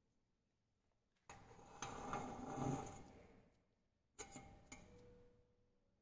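Stainless steel cone being fitted into the open body of a diffusion pump: starting about a second in, nearly two seconds of metal scraping and rubbing with a light ring, then two sharp metal clicks about half a second apart.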